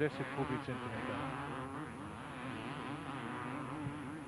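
Two-stroke 250 cc motocross bike engine running, its pitch rising and falling.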